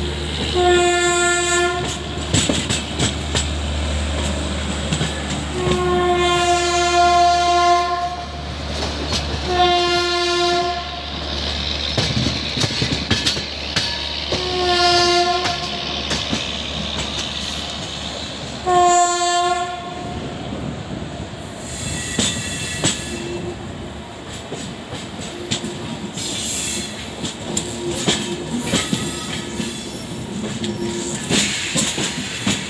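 WAP7 electric locomotive's horn sounding five blasts in the first twenty seconds, one of about two seconds and the others about a second each. Under it run the rumble and clicking of the LHB coaches' wheels over rail joints and points, heard from on board the train.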